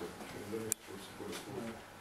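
Faint, muffled speech from a distant talker in a small room, with one sharp click about two-thirds of a second in.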